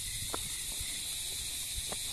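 Steady high-pitched insect drone, like cicadas in the trees, over a low rumble of wind on the microphone, with a couple of faint footsteps.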